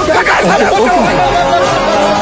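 Several men's voices shouting and chattering over background film music.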